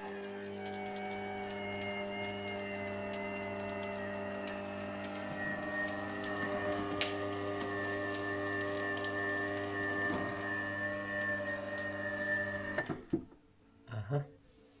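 Electric screw oil press's motor and drive running with a steady hum and whine while pressing hard, unhulled milk thistle seeds. It stops abruptly near the end: the press stalls as the motor is overloaded and its built-in protection cuts in.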